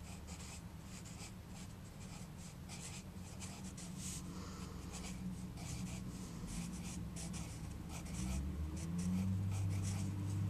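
Graphite pencil scratching on notebook paper in quick, irregular strokes as someone writes by hand. A low hum grows louder near the end.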